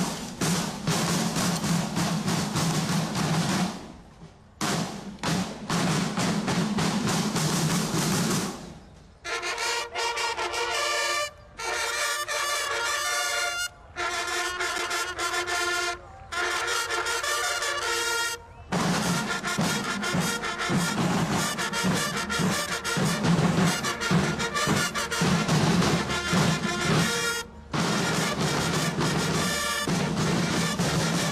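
Military marching band of field drums and brass: massed snare drums play a dense cadence, and about nine seconds in they give way to a brass fanfare in short phrases. From about nineteen seconds in, drums and brass play together.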